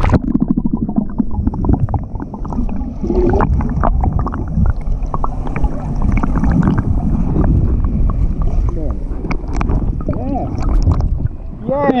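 Freestyle swimming heard through a camera held underwater: a muffled churning of arm strokes, kicks and exhaled bubbles, with many small clicks and pops. Near the end the camera breaks the surface and the sound opens up.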